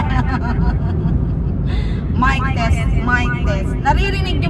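A woman singing into a handheld microphone with a built-in speaker, over the steady low rumble of a car cabin on the road. Her voice stops for over a second in the middle, then she sings again.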